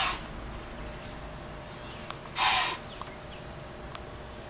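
White-tailed deer blowing: sharp, breathy snorts forced through the nose, one right at the start and another about two and a half seconds in. This is the deer's alarm snort at something it has noticed.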